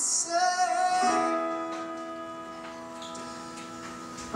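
Live song with band accompaniment: a male singer's note wavers and ends about a second in, then the backing instruments hold a chord that slowly fades.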